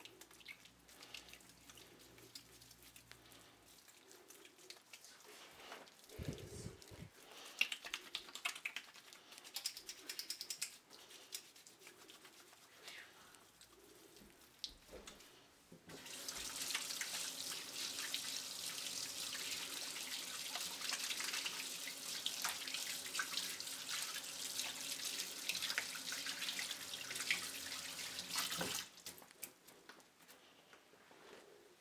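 Soapy hands rubbing and scrubbing together over a stainless steel kitchen sink, with small wet squelches and splashes. About halfway through, the kitchen tap is turned on and water runs steadily into the steel sink for around thirteen seconds as the hands are rinsed, then it is shut off shortly before the end.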